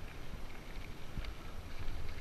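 Wind rumbling in gusts on a helmet-mounted action camera's microphone as a mountain bike rolls down a loose gravel fire road, with tyre noise on the gravel and scattered small ticks and rattles from the tyres and bike.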